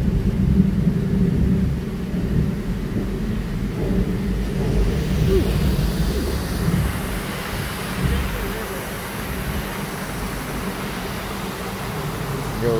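Amusement ride car rumbling steadily as it travels along its track, loudest in the first couple of seconds.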